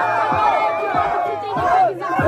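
Crowd of spectators shouting and hollering, many voices overlapping at once, the reaction to a punchline in a freestyle rap battle.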